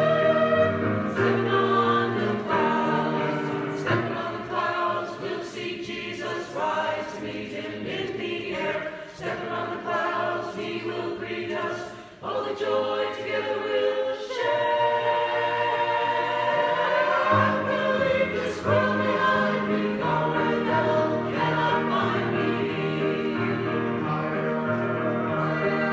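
A church choir singing with musical accompaniment; the voices dip briefly about halfway through before coming back in.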